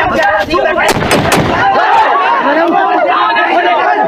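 A man loudly shouting a fukera, the Amhara warrior's boast chant, in a harsh, strained voice. About a second in come three sharp cracks in quick succession.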